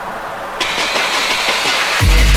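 Drum and bass DJ set in a breakdown with the bass and kick drum dropped out. About half a second in, a dense hissing noise riser comes in and grows louder, building toward the drop.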